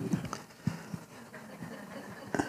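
Faint room sound with a brief vocal sound at the start and a few sharp clicks or knocks about two-thirds of a second in.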